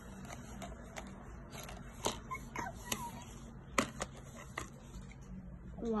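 Pennies being picked out of a clear plastic cup by hand: scattered light clicks and taps of coins against the plastic, the sharpest about two and four seconds in.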